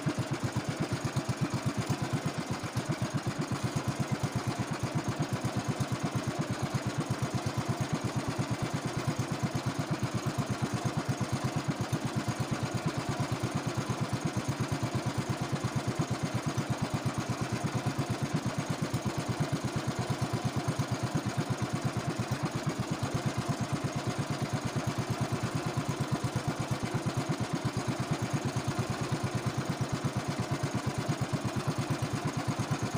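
Small engine of a motorized outrigger fishing boat running steadily while under way, a fast, even pulse of firing strokes.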